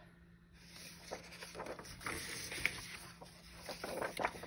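Paper rustling and crinkling in irregular small crackles as printed sheets of scrapbook paper are lifted and flipped by hand. It is faint, and picks up about a second in.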